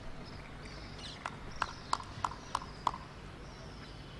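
Footsteps of hard-soled shoes clicking on paving: about six quick, even steps, roughly three a second, starting a little after one second in.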